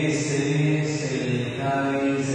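A single voice singing a slow religious chant, holding long sustained notes and moving to a new note near the end.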